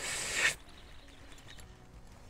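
A short rustle of a pop-up chair hide's fabric cover being pulled and handled, lasting about half a second at the start.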